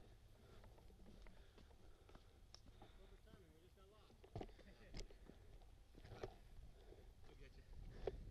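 Very quiet trail sounds: a low rumble with a few sharp knocks about halfway through, typical of mountain bikes rolling over a dirt trail, and faint distant voices in the middle.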